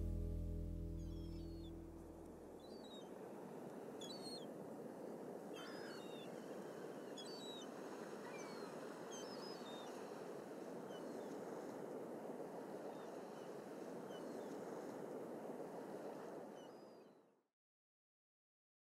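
The last notes of the song fade out in the first two seconds, leaving a steady wash of beach surf with scattered short, high bird chirps above it. All sound cuts off abruptly near the end.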